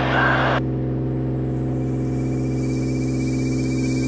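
Cirrus SR22's Continental IO-550 engine and propeller droning steadily at climb power, heard inside the cabin. A faint, thin, steady high tone joins about halfway through.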